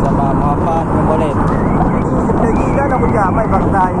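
Loud, steady rush of wind on the phone's microphone mixed with a motor scooter running while riding along the road, with a voice talking underneath the noise.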